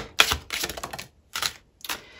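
Tarot cards being handled: a card drawn from the deck and flipped onto a wooden table, giving several short, light clicks and taps, the sharpest near the start.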